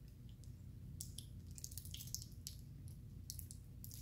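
Faint, scattered small clicks and wet mouth sounds of a man chewing a communion wafer, over a low steady room hum.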